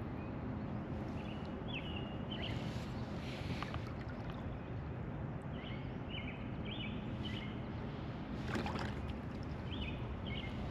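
Kayak paddle strokes: a double-bladed paddle dipping and swishing through the water, loudest twice, about three seconds in and near the end. Short high bird chirps repeat throughout over a steady low hum.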